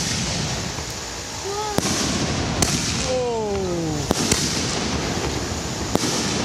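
Excalibur canister aerial shells, fused in a chain, going off in quick succession from their mortar tubes: sharp bangs of launches and bursts, about five in a few seconds, two of them close together a little past the middle.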